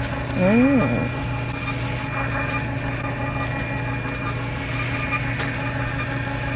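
The receipt printer of a CVS ExtraCare coupon kiosk runs steadily with a continuous mechanical hum as it feeds out a long strip of coupons. A brief rising and falling vocal "ooh" comes about half a second in.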